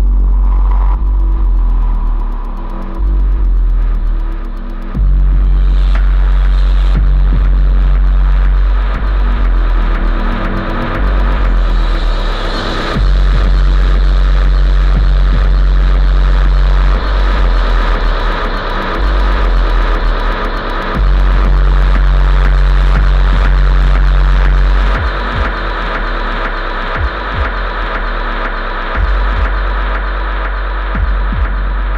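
Dark electronic music from a live set: very deep sub-bass notes held for about four seconds at a time, dropping away briefly between them, under a dense noisy texture.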